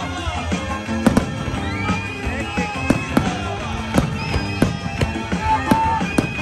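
Aerial firework shells bursting: a string of sharp bangs at uneven intervals, the first about a second in, over loud music with long held tones.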